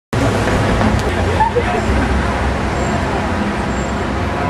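Street ambience: a steady low rumble of road traffic with people's voices talking over it.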